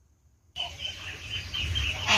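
Near silence, then about half a second in the sound of a poultry pen cuts in suddenly: fowl calling continuously over a low rumble.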